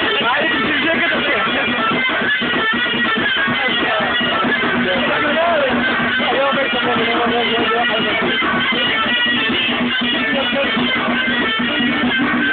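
Live music: a plucked string instrument with singing voices, dense and loud. A low held note comes in during the second half.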